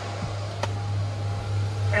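A bank of computer fans on a Porsche 911's engine lid running at full speed, heard from inside the car: a steady rush of air over a strong, constant low hum. The hum is the harmonics the fans set up in the car's body, which the builder calls really loud.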